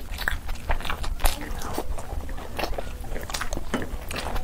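Close-miked chewing and eating mouth sounds of a person eating rice and curry by hand, with many irregular wet smacks and clicks.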